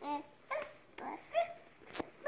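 Toddler babbling: a string of short, high-pitched syllables about every half second, with a sharp click near the end.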